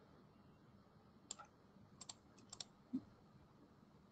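Faint clicks of a computer mouse and keyboard being operated, a scattering of short clicks about a second in and again around two to two and a half seconds in, with a soft low thump near three seconds, over near silence.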